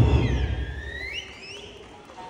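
Low, ringing decay of a big Eisa ōdaiko drum stroke, fading away over about a second. High whistles slide up and down over it.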